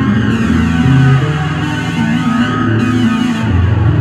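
Solo ambient improvisation on a headless electric bass: sustained low notes overlap and shift every second or so, with a sweeping shimmer higher up.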